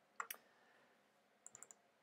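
Faint clicks of a computer mouse: one short click near the start, then a quick run of three or four tiny clicks about a second and a half in, otherwise near silence.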